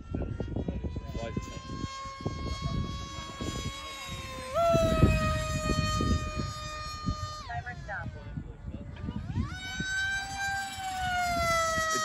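Electric pusher-prop motor of an FMS Flash 850mm RC jet in flight: a steady whine that steps up in pitch about four and a half seconds in, drops away briefly as the throttle comes off, then climbs back and holds. There is low rumbling noise underneath.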